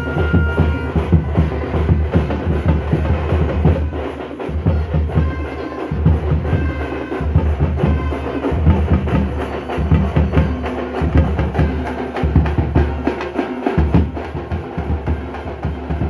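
Tamate frame drums beaten rapidly with sticks in a fast, dense rhythm, with a deep drum layer underneath. The deep layer cuts out briefly every two seconds or so.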